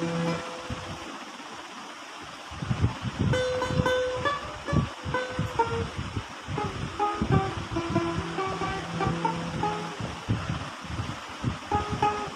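Harmonium playing. A held chord stops just after the start, then from about two and a half seconds a run of short notes steps up and down in pitch over a low thumping, and a low held note returns briefly near the two-thirds mark.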